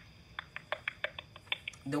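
A run of quick, light clicks, about six a second, stopping just before a voice starts near the end.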